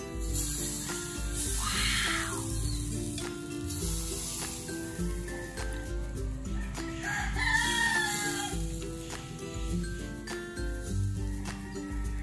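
A rooster crowing twice, once about two seconds in and again, longer, about seven seconds in, over background music with a steady beat.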